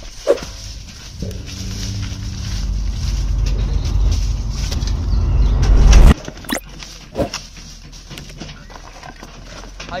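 A low rumbling drone builds steadily for about five seconds and then cuts off suddenly. Afterwards come a few sharp knocks and clinks as steel vessels and bags are set down on the ground.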